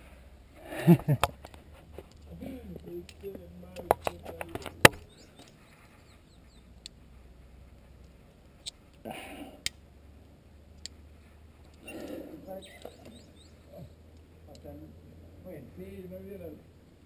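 Metal climbing carabiners clicking and clinking as they are handled at the anchor, with a cluster of sharp clicks about four to five seconds in.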